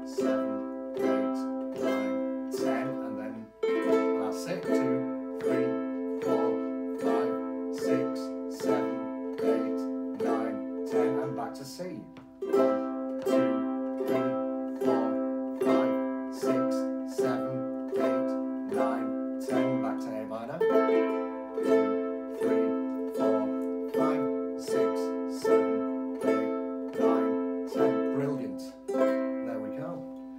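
Two nylon-string ukuleles strummed together slowly, a little over one strum a second, alternating between a C major chord and an A minor chord and changing chord about every eight seconds.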